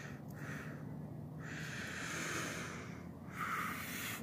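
A man breathing close to the microphone: a few soft breaths in and out, each about a second long.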